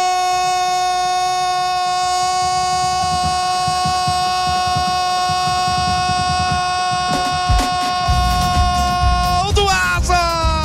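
Brazilian radio football commentator's long held goal cry, one 'gooool' sustained at a steady high pitch, its pitch dropping near the end.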